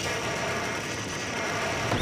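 A steady rushing, rumbling noise with a faint high whine over it, fading out right at the end.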